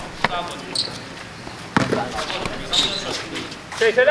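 Basketball bouncing on a hard outdoor court: two sharp bounces about a second and a half apart, among players' voices.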